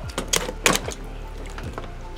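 A few short cracks and knocks as hands press a raw, backbone-removed turkey flat on a wooden cutting board. Quiet background music runs underneath.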